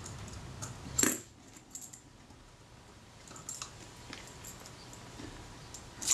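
Small metal parts of a camera's rewind assembly and a jeweller's screwdriver being handled. There is one sharp metallic click about a second in, then a few faint light clicks.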